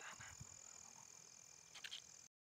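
Near silence: faint night ambience with a steady, high, thin insect drone and a couple of faint clicks near the end.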